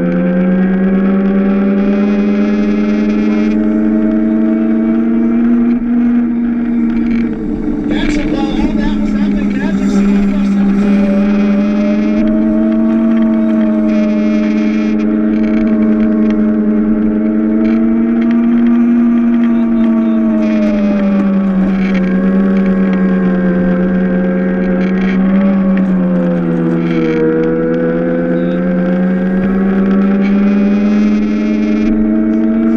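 Electric drive motor of a Power Racing Series ride-on race car heard onboard, a steady loud whine whose pitch drops and climbs again a few times as the car slows for corners and speeds back up. A rough clattering stretch breaks in about eight seconds in.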